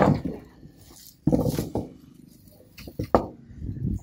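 Collapsible net trap (lú) handled on wooden planks: a few sudden knocks from its wire frames, one at the start, one just over a second in and one about three seconds in, with net rustling between.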